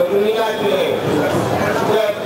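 A man's voice speaking into a microphone.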